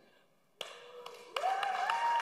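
A congregation clapping, starting about half a second in and swelling to full applause a second later.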